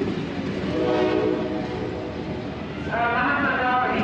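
Sleeper carriages of a passenger train rolling slowly alongside the platform as it pulls in, with a steady rumble of wheels and running gear. Twice, about a second in and again near the end, a pitched tone of several notes rises over the rumble.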